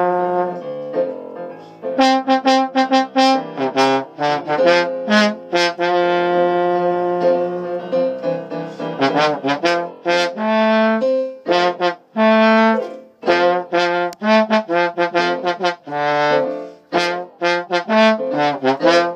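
Trombone playing a blues solo over piano accompaniment: runs of short, separate notes alternate with longer held ones, with a wavering held note about nine seconds in.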